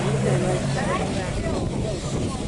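Indistinct voices of people talking, over the steady low hum of a motorboat engine that is strongest in the first second.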